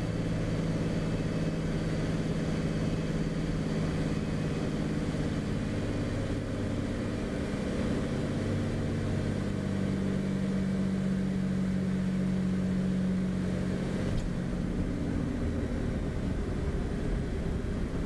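Cabin sound of a Beechcraft Bonanza's six-cylinder piston engine and propeller at low landing power through the flare, touchdown and rollout. It is a steady hum whose note shifts lower about three quarters of the way through.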